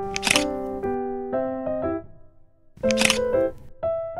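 Soft electric-piano background music with two short camera-shutter click effects, one just after the start and one about three seconds in; the music drops out briefly just before the second click.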